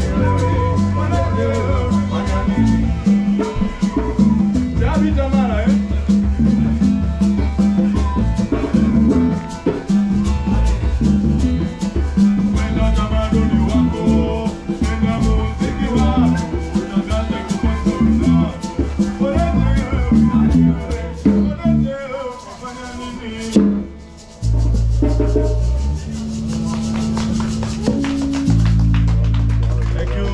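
Live band music with a steady bass line and a shaker rhythm. Near the end it thins out briefly, then a held low bass note comes back in.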